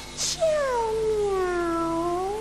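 A single long cat meow on the show's title card, its pitch sliding down and then rising again at the end, just after a brief high swish.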